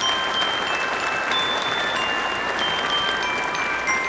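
Applause, with a scattering of high chime notes sounding one after another over it, as the Aleph letter puppet makes its entrance.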